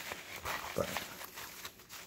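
Gore-Tex rain jacket being handled at its front zipper: stiff fabric rustling and scraping in short, irregular strokes.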